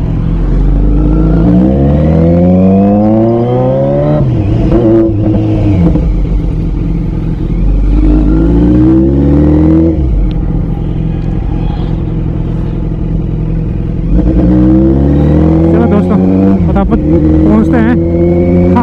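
Kawasaki Z900's inline-four engine pulling hard through the revs three times, about a second or so at the start, around eight seconds in and again near the end, each time rising in pitch and then dropping back as the throttle is eased or a gear is changed.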